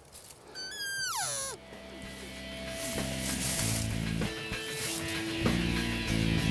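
A single high elk cow call about a second in, sliding steeply down in pitch, then background music starting and running on.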